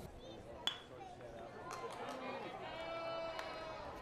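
Ballpark sound: one sharp crack of the pitched baseball, the loudest sound, about two-thirds of a second in, followed by spectators' voices and calls over the stadium background.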